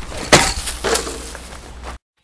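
Spray paint cans clinking together in a cardboard box as it is handled and put down: two sharp knocks with a short rattle, the first about a third of a second in, the second about a second in.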